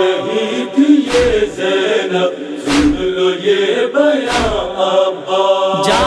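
Noha interlude: voices chant a drawn-out wordless line in chorus. A heavy slap keeps time about every second and a half, the matam chest-beat that accompanies noha recitation.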